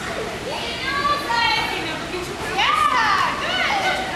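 Young children's high-pitched voices chattering and calling out, with a couple of louder rising-and-falling squeals about three seconds in.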